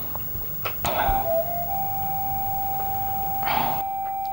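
Background film score: a single sustained synth note comes in about a second in and holds steadily, with a faint higher tone above it.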